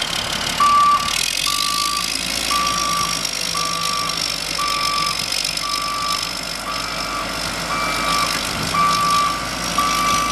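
Motor grader's backup alarm beeping about once a second as the machine reverses, over its Cummins 5.9L six-cylinder diesel running. A high whine rises in pitch about a second in and then holds steady.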